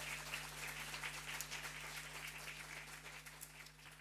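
Audience applause, many hands clapping, slowly dying away toward the end, over a steady low electrical hum.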